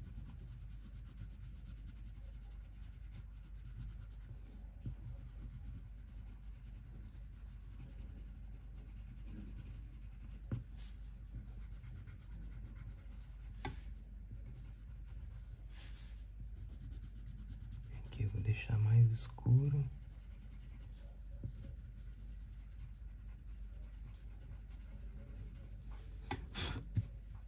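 Wax-core coloured pencil scratching and rubbing on thick paper as shading is laid in. It is faint over a steady low hum, with a few light ticks and a brief murmured voice about three-quarters of the way through.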